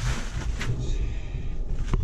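Rustling and rubbing noise, with a couple of short sharp clicks, as a gloved hand works inside a hanging deer carcass to pull the tenderloin free.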